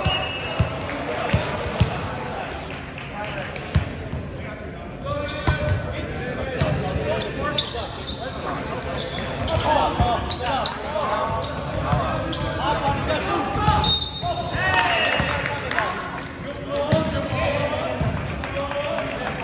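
Volleyball being struck and bounced in a gymnasium, sharp smacks scattered through a rally, with players shouting and calling out among the hits and the sound echoing in the hall.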